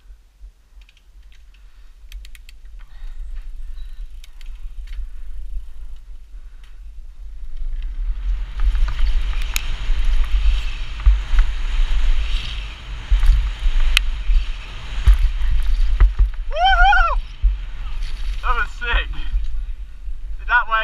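Mountain bike descending a dirt trail: wind rush over the helmet-mounted GoPro and tyre rumble, faint at first and growing loud about halfway through as speed builds, with a couple of sharp knocks from the bike. Near the end a brief high, rising-and-falling squeak that the rider calls a tweet.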